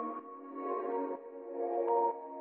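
Soft ambient background music with slow, sustained synth chords.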